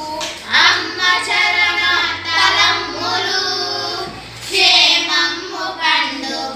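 A few young girls singing a song together, with a short break between phrases about four seconds in.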